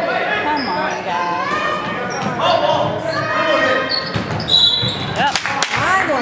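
Basketball game in a gym: players' and spectators' voices echoing in the hall, a short high referee's whistle about four and a half seconds in calling a foul, then a few sharp knocks of the ball bouncing on the hardwood floor near the end.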